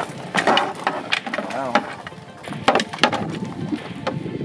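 Gear being rummaged and shifted in a pickup truck bed: a string of irregular knocks, clatters and scrapes as items, including a wooden landing net, are moved and pulled out.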